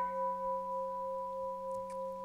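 A sustained ringing tone that starts suddenly and holds steady with several pitches sounding together and a slight waver in loudness.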